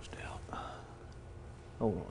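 A man speaking quietly, half under his breath, over a steady low hum. His voice rises sharply into a loud word near the end.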